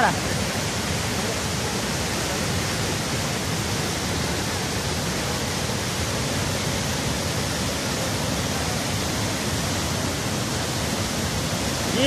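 Muddy floodwater rushing and churning through a breached, eroding earth bank: a loud, steady rushing noise with no let-up.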